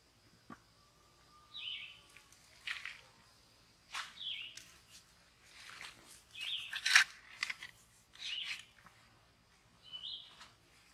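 A bird calls four times, short downward-sliding chirps about two seconds apart. Between them come the scrapes and thuds of a potato fork driving into wet, sandy soil and lifting it, the loudest about seven seconds in.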